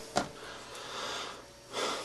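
A man's breathing in a pause between words: a soft breath through the middle, then a quick in-breath near the end before he speaks again. There is a faint click just after the start.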